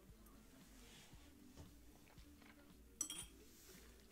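Near silence with faint background music, broken about three seconds in by one short clink as a drinking vessel is handled on the table.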